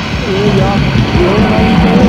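Distorted, lo-fi death/doom metal from a 1987 cassette demo, with heavy guitars and a line that slides up and down in pitch.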